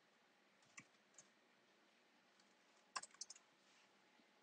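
Near silence broken by a few faint clicks at a computer: a single click just under a second in, and a quick run of clicks about three seconds in.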